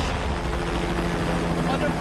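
A steady, loud low droning hum, engine-like, with a few held low tones over an even wash of noise. It opens with a sudden hit.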